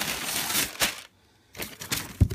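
Packing paper rustling and crinkling as it is handled, with a sharp crackle a little under a second in. It stops for a moment, then starts again with a few clicks and rustles near the end.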